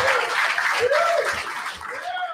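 Audience applauding and cheering, with a few voices calling out over the clapping, dying down toward the end.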